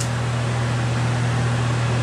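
Steady low hum under an even hiss: constant background noise in a room, unchanging throughout.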